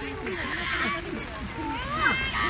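Spectators' voices overlapping without clear words, with one high call rising in pitch near the end.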